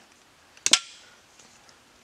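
A single sharp click of hard plastic about two-thirds of a second in, with a brief faint ring after it, as a piece of car door trim is handled.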